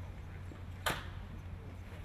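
A football slapping into a pair of hands as it is caught: one sharp slap about a second in, over a steady low hum.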